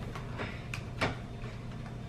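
Light clicks and taps of a laptop being shifted and settled on a plastic notebook cooler stand, several soft knocks, the clearest about a second in, over a steady low hum.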